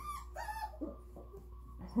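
A three-and-a-half-week-old puppy giving a few short, high whimpering squeaks in the first second or so.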